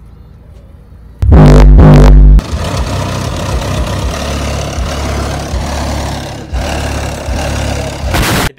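Car stereo playing bass-heavy music extremely loud. A deep bass hit comes in about a second in, so loud that it clips, and after about a second it settles into a steady, loud, bass-heavy din.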